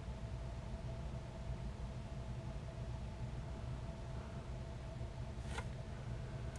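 Quiet, steady background hum with a faint constant tone, and one light click shortly before the end.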